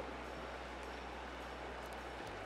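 Steady, quiet hiss of a small flowing creek, with a faint steady low hum underneath.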